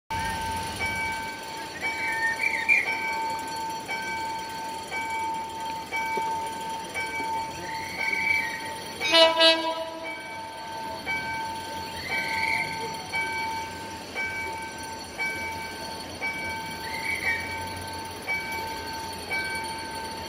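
A diesel locomotive's air horn gives one short blast about nine seconds in, from the EMD GT22CW approaching in the distance. Underneath runs a steady electronic tone with short beeps repeating at an even rhythm.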